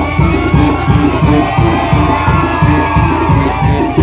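Mexican street brass band (banda) playing a lively tune with a steady, fast beat of drum and tuba. A crowd shouts and cheers over the music.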